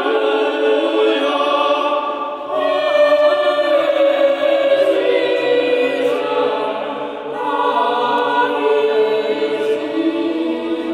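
Choir of boys and men singing a sacred choral piece in sustained, overlapping parts. A lower part comes in about two and a half seconds in, with short breaths between phrases at that point and again near seven and a half seconds.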